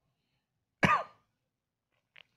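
A single short cough, about a second in.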